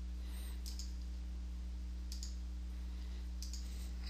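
A few faint computer mouse clicks, spread about a second or more apart, over a steady low hum.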